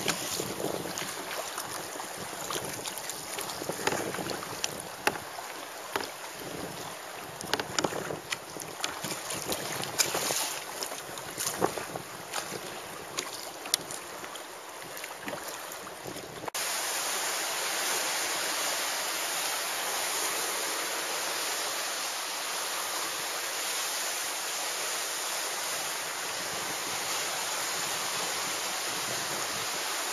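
Sea water splashing and slapping irregularly around a kayak, with wind on the microphone. About halfway through it cuts suddenly to a steady, even rush of wind and sea.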